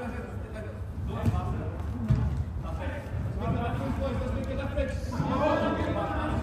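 Players' voices calling out across a large, echoing indoor hall during a five-a-side football game, with a single thud about two seconds in.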